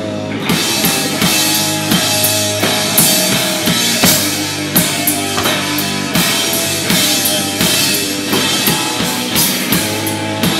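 Hardcore punk band playing live: electric guitars holding sustained chords over a drum kit pounding out steady hits with crashing cymbals.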